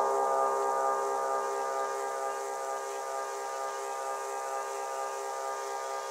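Electronic dance music in a breakdown: a sustained synth chord with no beat and the bass cut away, slowly fading.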